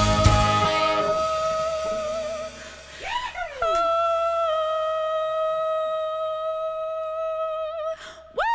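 A rock band ends a song: drums, bass and guitars stop about a second in, leaving a single note held on. That note swoops up and down briefly about three seconds in, then rings on at one steady pitch.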